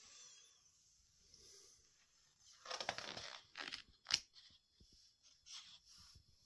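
A page of a large coffee-table book being turned, with a soft paper rustle about halfway through and a few light clicks after it.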